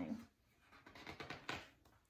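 Faint rustling and handling of a paper picture book, with a brief sharp tap about a second and a half in.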